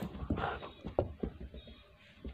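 A puppy's paws patter and thump across a carpeted floor as it runs back to its owner: a string of short, irregular soft thumps.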